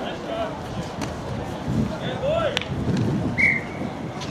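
Rugby players and spectators shouting across the field, with one short blast of the referee's whistle about three and a half seconds in.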